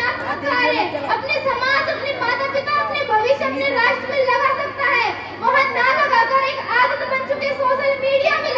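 Only speech: a girl speaking continuously into a microphone.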